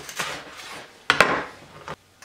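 Chef's knife sawing through the toasted crust of a grilled sandwich, a rough, crunchy rasp. About a second in comes a sharp knock of the blade on the plastic cutting board, and a lighter tap near the end.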